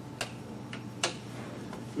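A few sharp clicks over a steady low room hum, the two loudest about a second apart.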